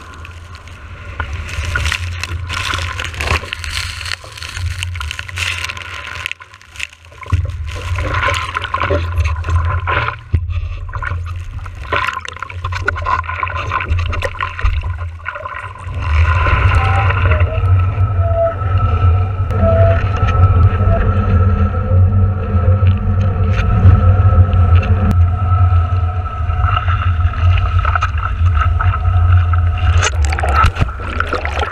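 Water rushing and splashing past a kiteboard's nose, picked up by a board-mounted action camera, with heavy wind buffeting on the microphone. Sharp crackles of spray come through the first half. About halfway through the rush gets louder and a steady high tone runs under it.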